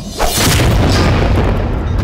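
A loud boom hits a fraction of a second in and rumbles on for over a second, over a low music score.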